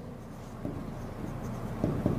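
Faint scratching of writing strokes, with short louder strokes about half a second in and near the end.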